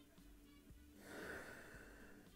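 A person's soft breath while tasting whisky from a glass: a brief airy sound about a second in, lasting under a second, over faint background music.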